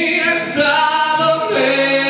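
A man singing long, held notes into a microphone, the melody moving to a new note about halfway through, with acoustic guitar accompaniment under the voice.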